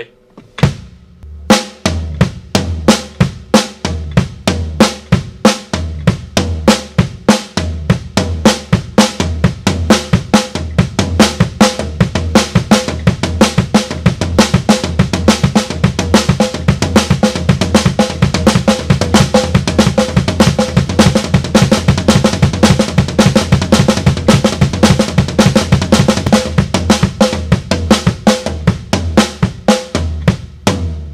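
Drum kit played in a linear single-stroke pattern of snare, floor tom and one bass-drum kick, alternated with the hands crossed. The strokes start about a second and a half in, slow at first and getting faster and denser.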